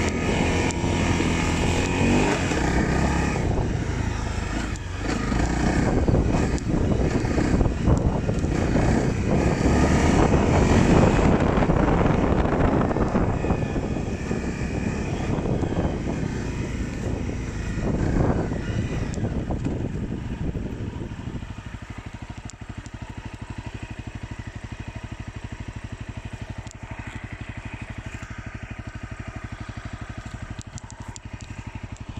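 Dirt bike engine running under way, rising and falling with the throttle, loudest around ten seconds in. From about twenty-one seconds it settles to a quieter, steady, evenly pulsing idle.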